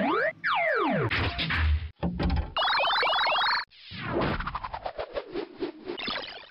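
A string of cartoon-style electronic sound effects standing in for a robot analysing a pill. First comes a falling glide, then about a second of rapid warbling chirps, then a fast run of clicks and stutters.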